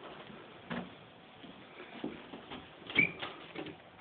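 Footsteps and small knocks of someone walking through the rooms of a house, with a louder knock and a short squeak about three seconds in.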